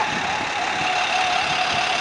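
An emergency vehicle's siren gliding down in pitch, then holding a low steady note that fades near the end, over the steady noise of city traffic.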